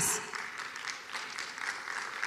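Audience applauding faintly and evenly.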